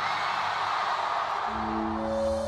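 Trailer music: a dense, noisy swell, then a low sustained chord comes in about one and a half seconds in.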